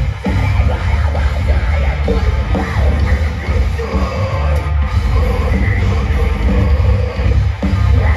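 A post-hardcore band playing live and loud, with distorted guitars and drums over a heavy, dominant bass, heard from within the crowd.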